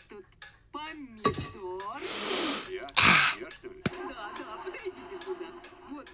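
A character's wordless voice sounds: a long breathy intake about two seconds in and a sharp burst of breath about a second later, then a low steady tone to the end.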